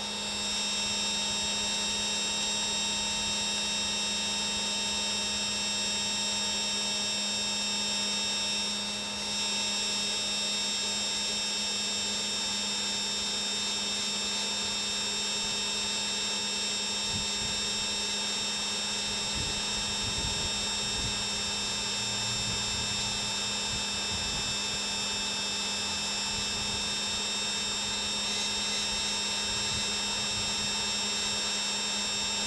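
Blower of a homemade fluid-bed coffee roaster running steadily, circulating the beans on hot air: a hum with several steady high tones over a rush of air, briefly dipping about nine seconds in.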